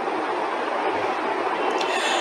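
Steady, unpitched rushing background noise, slowly getting a little louder, with no clear rhythm or tone.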